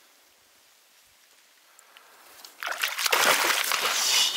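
Water sloshing and splashing in an ice-fishing hole as a released lake trout kicks free and goes down. It comes suddenly and loudly about two and a half seconds in, after a near-silent pause.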